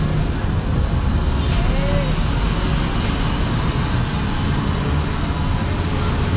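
Steady road traffic and vehicle engine noise, with a low rumble throughout.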